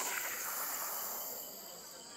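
A person sucking a long breath in through a tongue curled into a straw (the sitali cooling breath): a hissing draw of air that fades out about a second and a half in.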